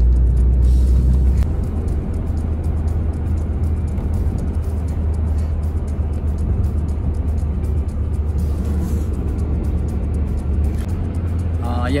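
Steady road and engine rumble inside a moving car's cabin, with music playing over it.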